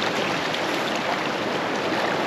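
Shallow seawater washing in over sand and swirling back, a steady rushing wash.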